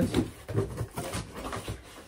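Cardboard shipping box flaps being pulled open by hand, with irregular scraping and rustling of the cardboard.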